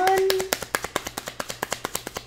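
Tarot deck being shuffled by hand: a quick, even run of card clicks, about a dozen a second.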